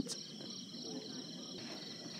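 Faint chorus of insects: a steady, high-pitched trill pulsing fast, which dims a little and then comes back up about a second and a half in.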